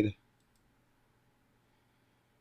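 A faint single computer mouse click about half a second in, otherwise near silence.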